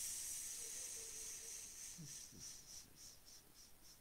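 A faint high-pitched hiss that fades away, breaking into quick pulses about three or four a second in its second half.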